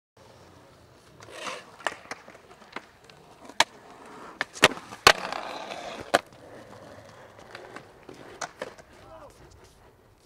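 Skateboard on a concrete skatepark: urethane wheels rolling with several sharp clacks of the board snapping and landing.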